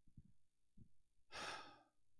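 A single breath out, like a sigh, into a handheld microphone a little over a second in, amid a few faint low knocks and otherwise near silence.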